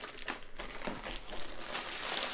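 Thin clear plastic bag crinkling and rustling in a string of irregular crackles as a rolled canvas is slid out of it.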